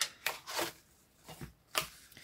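Paper cards and envelopes being handled: about five short paper rustles and taps with brief pauses between them.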